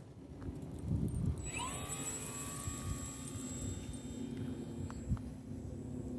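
Radio-controlled Carbon Cub model airplane's motor whining. About a second and a half in it sweeps up in pitch, then holds a steady high whine until near the end, over low wind rumble on the microphone.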